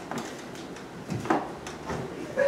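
Faint hall background: low rustling with a few soft knocks and clicks, one about a second in and a couple near the end.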